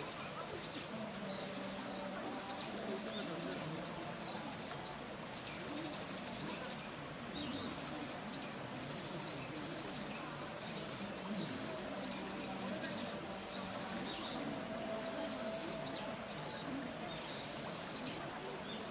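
A shallow mountain stream running over rocks, with small birds chirping many short calls throughout. A high buzz pulses on and off above it.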